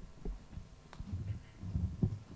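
Irregular low thumps and rumbles from a microphone being handled and adjusted on its stand, with a sharp click about a second in.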